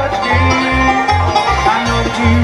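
A live bluegrass band playing an instrumental: a fiddle melody wavering over banjo rolls and guitar, with a bass line stepping between two low notes on every beat.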